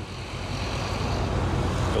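Steady rumbling ride noise from an electric unicycle rolling over a dirt road, its tyre on the loose surface with wind on the rider's microphone, growing slightly louder.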